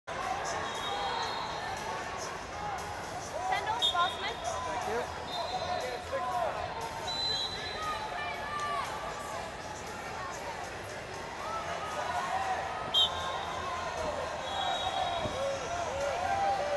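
Sports-hall ambience at a wrestling tournament: rubber-soled wrestling shoes squeak in short chirps on the mats, with background voices across the hall. Several short high whistle blasts sound at intervals, and there is one sharp knock near the end.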